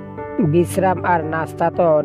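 A voice narrating over background music. The voice pauses briefly at the start and resumes about half a second in, while the music runs on beneath it.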